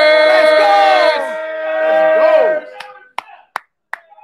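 Several voices singing long held notes together, with other voices sliding up and down in pitch over them, stopping about two and a half seconds in. A few sharp clicks or claps follow near the end.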